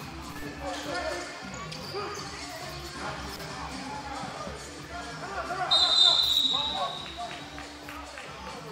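Basketball being dribbled on a hardwood gym floor with players' voices, then a referee's whistle blows one long, steady, high blast about six seconds in, stopping play.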